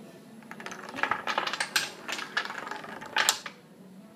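Wooden Jenga blocks falling one after another like dominoes on a wooden table: a fast run of small clacks lasting about three seconds, with a louder clack near the end.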